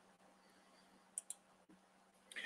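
Near silence, broken a little over a second in by two faint, quick clicks in close succession.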